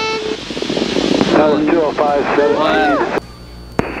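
Cockpit audio through a light aircraft's headset system: a steady beep ending just after the start, then a hiss of static and an indistinct voice. The hiss and voice cut off sharply about three seconds in, leaving a low hum, and a single click comes near the end.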